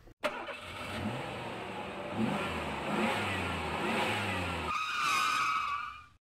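Motor vehicle engine accelerating, its pitch rising several times over road noise. Near the end a higher wavering tone takes over, and then the sound cuts off suddenly.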